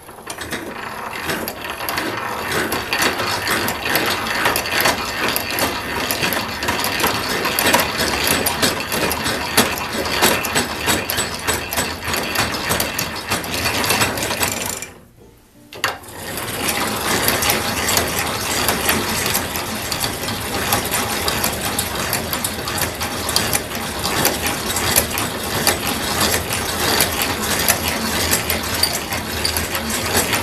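Hand-cranked Silver drill press being turned, its gears and feed ratchet clicking rapidly as a large bit cuts into steel plate. The cranking stops briefly about halfway through, then starts again.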